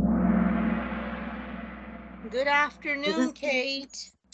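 A Kahoot quiz's answer-reveal sound effect: a sudden gong-like hit that rings and fades away over about two seconds, cutting off the game's countdown music. A few short sounds with a wavering pitch follow near the end.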